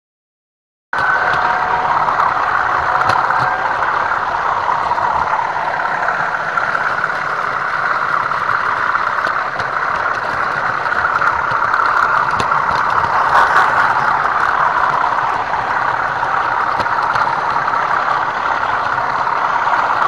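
OO gauge model train running on the layout, heard close up from a small camera riding on the train: a steady, loud, engine-like running drone with faint clicking. It starts suddenly about a second in.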